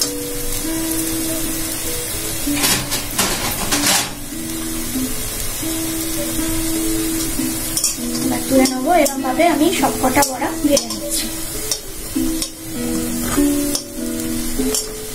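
Lentil fritters sizzling in shallow hot oil in a metal kadai, with a metal spatula scraping and knocking against the pan a few times, around 3 s in and again from about 8 to 11 s. Background instrumental music plays throughout.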